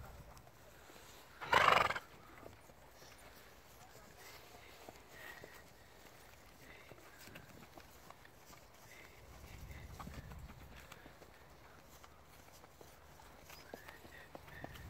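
A horse whinnies once, short and loud, about a second and a half in. After that come faint hoof steps of horses walking on grass and dirt.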